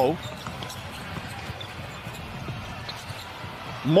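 A basketball being dribbled on a hardwood court: a few faint, irregular bounces over a steady background hum of the arena.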